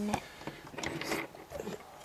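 Plastic LEGO bricks clicking and rattling in a few light, irregular taps as a brick-built panel of the LEGO Sandcrawler is slotted into place.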